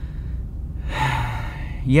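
A man's audible breath out, like a sigh, lasting about a second in the middle of the pause, just before he speaks again. A steady low hum sits underneath.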